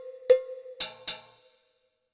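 Yamaha PSR-EW425 digital keyboard playing a percussion voice one key at a time: three single hits in the first second and a half, with a ringing metallic tone from the first strikes fading away under them.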